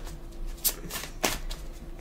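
Oracle cards being handled and turned over: a few short, sharp card snaps, two of them louder, about half a second apart in the middle.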